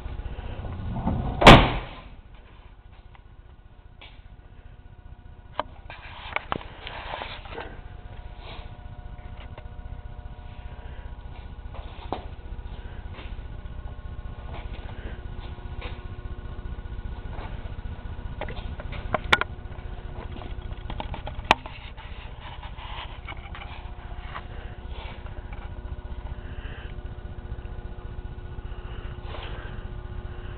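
A 1965 Coronet's car door shut with one loud slam about a second and a half in. Then come a few faint clicks and knocks over a steady low hum.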